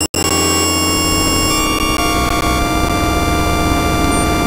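Dense, noisy drone of many held synthesizer tones stacked together, with two brief cut-outs to silence right at the start.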